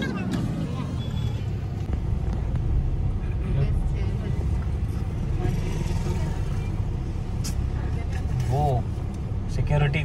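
Engine and road noise inside a moving car's cabin, a steady low rumble as the car drives along a rough rural road. Short bursts of voices come in near the end.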